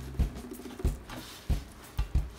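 Hands kneading soft maida dough for bhature in a stainless steel bowl: four dull, evenly spaced thumps, one at each push of the dough against the bowl.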